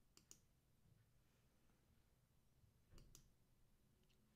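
Near silence, with a few faint clicks: two about a quarter-second in and another pair about three seconds in.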